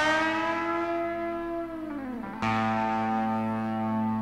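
Electric guitar through effects: a chord is struck and rings, its pitch sagging downward, then a new chord is struck about two and a half seconds in and rings on over a steady low bass note.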